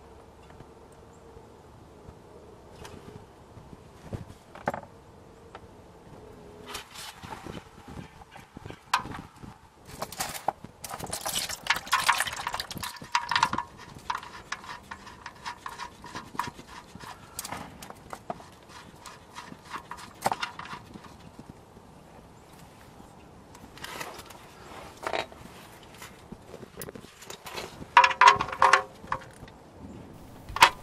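Ratchet clicking on an oil pan drain plug as it is loosened, then motor oil splashing out of the drain hole over a gloved hand into a drain pan, and more clicking and knocking near the end as the plug is threaded back in after a partial drain of a quart or two.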